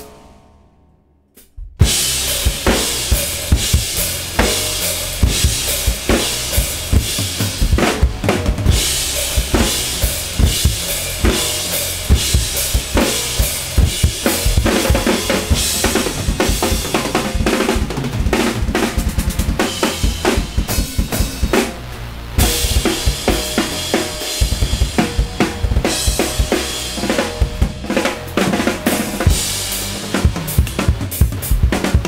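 Acoustic drum kit played fast and hard: dense bass drum, snare and cymbal hits. It stops dead at the start, leaving under two seconds of near silence, then the drumming resumes and carries on, with a brief drop a little over two-thirds through.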